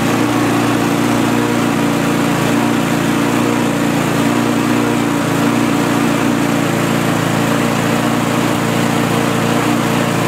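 Petrol rotary lawnmower engine running steadily while it warms up. It is not running quite evenly, which the owner puts down to the carburettor's diaphragm and gasket perhaps not sealing well against the tank.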